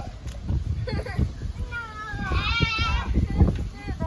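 Children jumping on a backyard trampoline: repeated low thuds of the bouncing mat, with a shaky, bleat-like cry about two seconds in.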